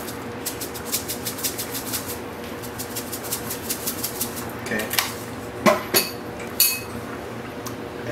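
Salt being added to a pot of soup: a quick run of light ticks for about three seconds, then a few separate louder clinks of kitchen utensils against the pot.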